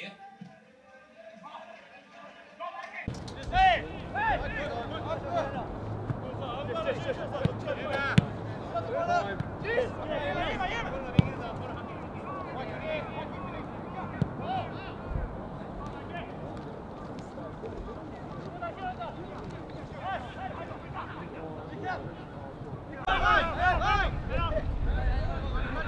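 Live sound of an outdoor football match starting suddenly about three seconds in: players calling and shouting to each other over a steady outdoor rumble, with a few sharp thuds of the ball being kicked.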